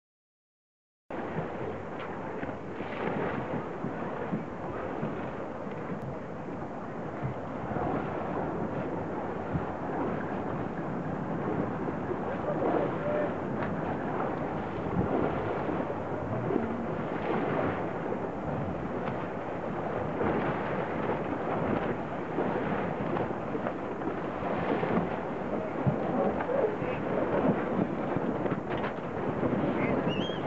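Wind buffeting the microphone on a sailing yacht under way, a dense, steady rush of noise that starts abruptly about a second in.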